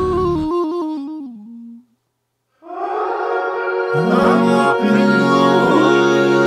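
Layered Auto-Tuned vocal harmonies, sung a cappella: the voices step down in pitch and fade out about two seconds in, then after a short silence a full chord of stacked voices swells back in, with lower voices joining about four seconds in.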